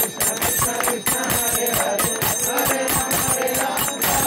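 Kirtan music: small hand cymbals (karatalas) ringing in a fast steady rhythm, with a man's chanting voice into a microphone underneath.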